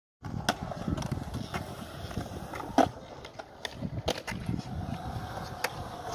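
Skateboard wheels rolling on a concrete skatepark surface with a low rumble, broken by several sharp clacks. The loudest clack comes just before the middle.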